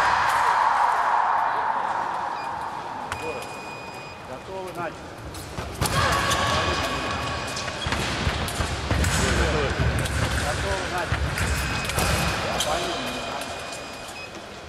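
Electric fencing scoring machine's buzzer sounding for about two seconds as a touch registers, then fading. After it, the echoing ambience of a large sports hall with scattered distant voices and dull thumps.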